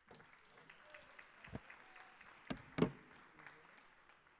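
Audience applause, thinning out toward the end, with a few louder knocks in the second half.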